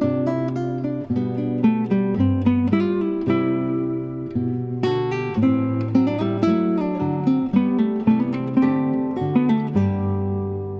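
Background music: an acoustic guitar playing a steady run of plucked notes over a moving bass line.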